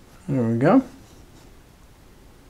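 A man's voice making one short sound of about half a second, rising in pitch at the end, with no words picked out.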